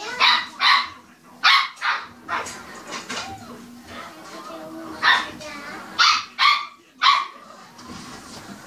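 Small white dog barking in short, sharp yaps, about nine barks in all. The first run comes in the first two and a half seconds and a second starts about five seconds in.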